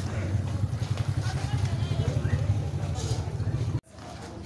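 Small step-through motorcycle engine running at low speed close by, a steady low putter that cuts off suddenly near the end.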